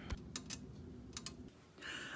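A few faint, short clicks and light handling noise, broken by a brief dropout about one and a half seconds in.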